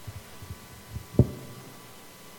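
A few dull low thumps on a handheld microphone being handled, the loudest just after a second in, over a faint steady hum from the sound system.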